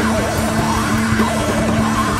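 Loud noise-rock band recording: a steady held low note under a dense wall of instruments, with a yelled, wavering vocal line above.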